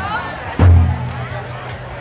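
Music with a deep drum: one heavy stroke about half a second in, its pitch dropping as it sounds, over a steady low tone. Faint crowd voices run underneath.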